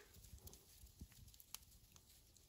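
Near silence, with a few faint short clicks about a second in and again half a second later.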